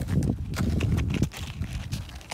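Irregular crunching and scraping on packed snow as a plastic sled is dragged over it by its rope, with a low wind rumble on the microphone.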